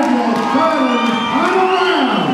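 Boxing crowd cheering and shouting at the end of the bout, with drawn-out shouts that rise and fall in pitch.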